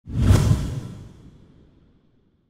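Edited-in whoosh transition sound effect: a sudden swell with a deep rumble underneath that peaks within half a second and fades out over about a second and a half.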